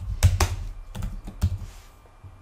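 Typing on a computer keyboard: a quick run of separate keystrokes, most of them in the first second and a half, as a short line of code is entered.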